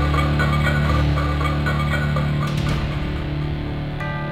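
Opening title theme music: a sustained low drone under a quick run of repeating notes, with a short swish about two and a half seconds in.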